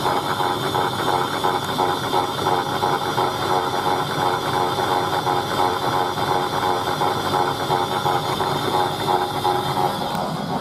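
Chad Valley Auto 2 toy washing machine on its spin cycle: its small motor and plastic gears whirring steadily with a fast, fine rattle.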